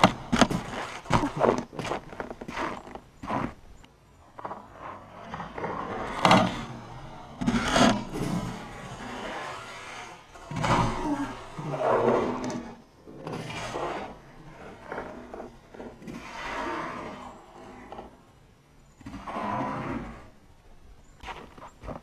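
Whooshing rush of boiling water flung from a cup into −5°F air as it flashes into a vapour cloud, the first and loudest burst right at the start, then similar bursts recurring several times through the replays.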